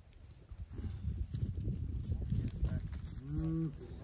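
A cow lowing once, a short moo about three seconds in, after a stretch of low rumbling noise.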